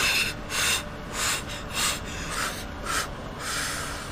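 Rhythmic puffing breaths, about seven short blown-out breaths roughly every half second or so: the paced breathing taught in a pregnancy breathing course, used to get through the pain.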